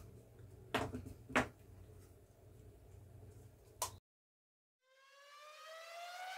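Faint low hum with three short knocks for the first few seconds, then the sound cuts out abruptly; about a second later an electronic rising sweep, a stack of tones climbing steadily in pitch and growing louder, begins.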